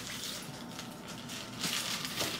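Clear plastic packaging bag rustling as it is handled and opened by hand.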